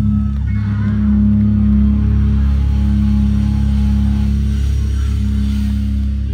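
Live band's amplified sound holding a low, steady drone through a concert PA, with faint crowd voices over it.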